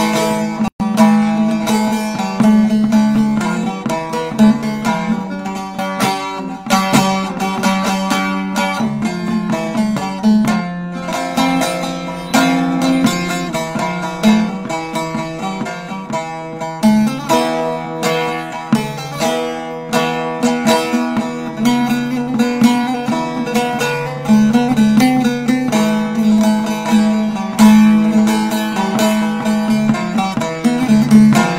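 Bağlama (long-necked Turkish saz) played solo: a busy plucked instrumental introduction to a Turkish folk song, fast runs of notes over a low note that keeps ringing beneath the melody.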